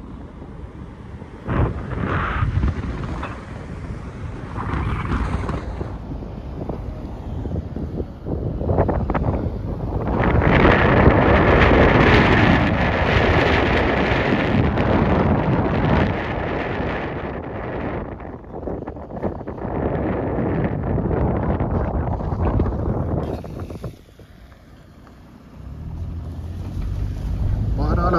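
Wind buffeting the microphone of a camera on a moving vehicle: a dense, gusting rush that swells about ten seconds in and drops away briefly near the end.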